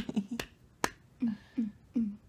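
A single sharp click a little under a second in, then three short, low voice sounds in quick succession.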